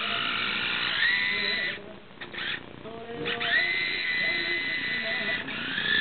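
Small electric motor and gears of a radio-controlled toy car whining as it drives. The pitch rises about a second in, the whine drops out briefly just before two seconds, then it starts again and rises a little after three seconds.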